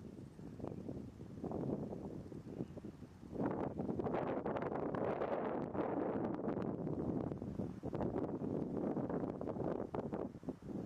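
Wind buffeting the microphone in uneven gusts, growing louder about three and a half seconds in.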